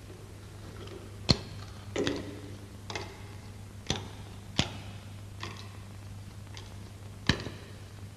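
A series of sharp, separate knocks at uneven intervals of about one a second, the loudest a little over a second in and near the end, over a steady low hum.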